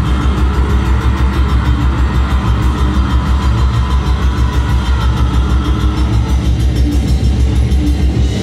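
Metal band playing live in a club: distorted guitars and bass over fast, driving, evenly repeated drumming, loud.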